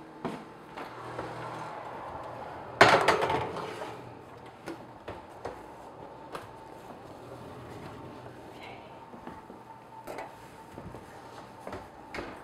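Wall oven door and metal baking pan being handled: a loud bang about three seconds in, then lighter clicks and knocks of the pan and oven racks.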